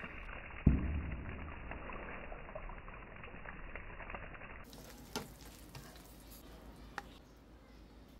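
Sliced hotdogs sizzling faintly in a little oil in a nonstick pan, with a single thump of the spoon a little under a second in. The sizzle drops quieter about halfway through, with a few light clicks of the spoon.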